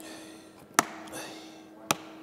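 Hand cutters snipping through a plastic wheel-arch liner: two sharp snaps about a second apart.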